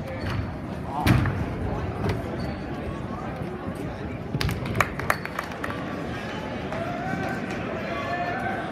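A gymnast's tumbling pass lands on a sprung floor-exercise mat with a heavy thud about a second in, then a lighter thud. Over the steady chatter of a gym crowd, a few sharp claps come around the middle.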